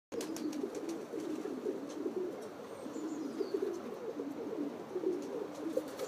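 Several domestic pigeons cooing at once, their low, wavering coos overlapping into a continuous murmur.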